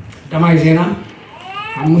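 A man preaching into a handheld microphone: two spoken phrases with a short pause between them.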